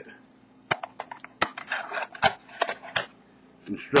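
Paper rustling as an instruction sheet is pulled out of an aluminium carrying case, with several sharp taps and knocks against the case along the way.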